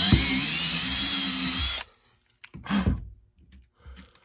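Cordless drill boring through a steel bracket held in a bench vise, running with a steady whine, then stopping suddenly about two seconds in. A short knock follows as the drill is set down on the wooden bench.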